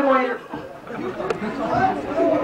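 Several people talking over one another in a reverberant room, with a loud voice at the start and a single sharp click partway through.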